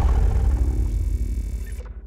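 Low rumbling tail of a logo-reveal impact sound effect, slowly dying away; its higher hiss cuts off shortly before the end.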